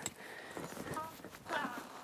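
Quiet outdoor background with a few faint clicks, and a short spoken "yeah" a little after the middle.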